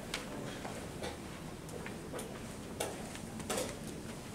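Low room noise of a quiet playing hall with a scattering of sharp, irregularly spaced light clicks: chess pieces and clock buttons knocked down on nearby boards.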